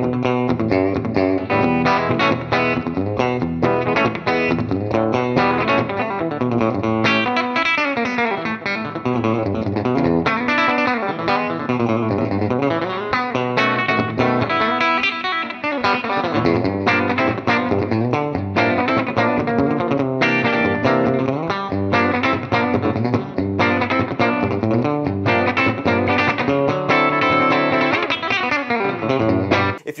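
Electric guitar played through an amp on the bridge humbucker of a Tone Specific 1958 Twang PAF set, a continuous run of picked notes with bass notes underneath. The tone is bright and in-your-face, like a hot-rodded Telecaster mixed with a PAF.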